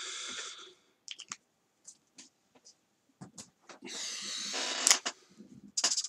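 Fineliner pen strokes scratching across paper: a short stroke at the start and a longer one about four seconds in, with scattered small clicks and taps between and a sharp tap near the end of the longer stroke.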